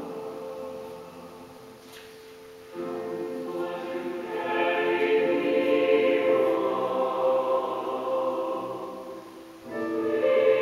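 Choir singing a spiritual in slow, sustained chords. A new phrase comes in about a quarter of the way through and swells louder, and another phrase begins near the end.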